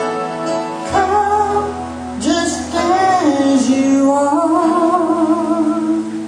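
A woman singing into a microphone over instrumental accompaniment. Her voice enters about a second in, with held notes that waver in vibrato.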